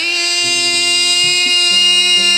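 Opening of a dangdut band's music: one long held note with lower notes changing beneath it.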